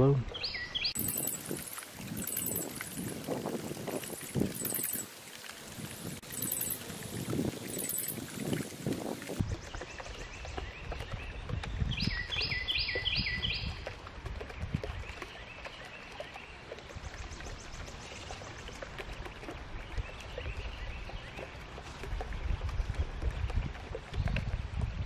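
Birds chirping by a pond over low, steady outdoor noise. A very high trill repeats roughly once a second for the first nine seconds or so, then a quick run of about six falling peeps comes about twelve seconds in.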